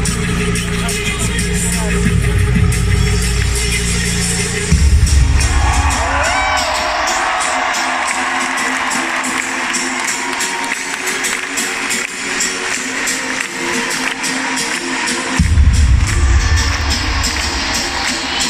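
Live pop music over a large arena's sound system, heard from within the crowd: a heavy bass beat drops out about five seconds in, leaving the higher parts with crowd voices and cheering, then returns with a loud hit near the end.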